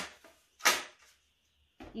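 A single sharp clack, about half a second in, from the air fryer's removable basket parts knocking together as they are handled, with a short fading ring after it.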